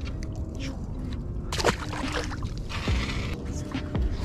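Steady wind and water noise around a small open fishing boat, with a sharp knock about a second and a half in and a short hiss near the end.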